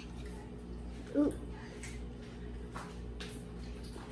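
Low steady room hum with a few faint clicks of a metal fork against a plate as chocolate cake is cut, and a short hummed vocal sound from a young girl about a second in.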